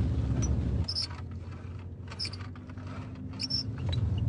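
Low road rumble inside a moving car that cuts off abruptly about a second in. After it comes quieter background with a faint hum and a few short, faint clicks.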